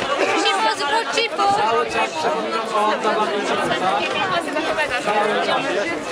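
Several people chatting at once, their voices overlapping into an unbroken babble of conversation.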